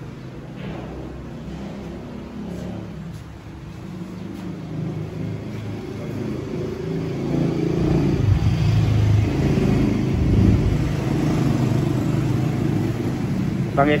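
A vehicle engine running nearby, a low rumble that grows louder about halfway through and stays up to the end.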